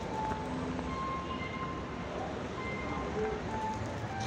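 A street musician's guitar playing faintly, scattered single notes over a steady background of outdoor city noise.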